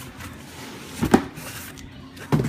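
Cardboard shoebox being flipped over and set down on a tile floor, with one sharp knock about a second in, over low household background noise.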